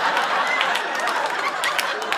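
Studio audience laughing after a punchline, slowly dying away.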